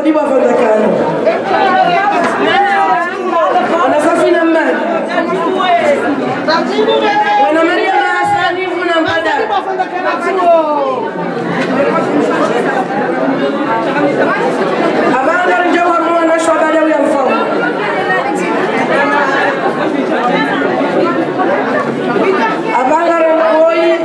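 Several women's voices talking over one another, some through microphones, with the echo of a large hall.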